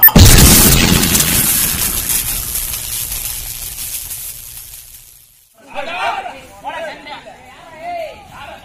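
A loud boom sound effect with a shimmering tail that fades away over about five seconds. After a brief quiet gap, several voices shout from about five and a half seconds in.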